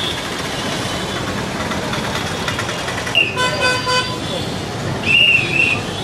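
Busy street noise of traffic and a crowd, with a vehicle horn sounding one steady note for about a second midway and a shorter, wavering high-pitched toot near the end.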